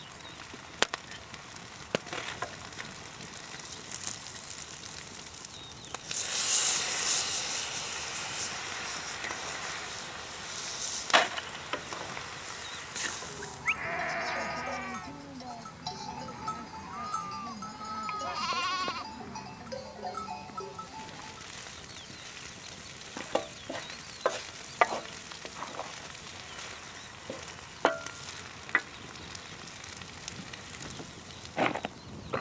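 A wooden spatula stirring and scraping rice-and-herb dolmeh filling in a wide metal pan over a wood fire, with sizzling that is loudest for a few seconds early on. Sheep bleat several times through the middle, and sharp clicks of utensils on the pan come through near the end.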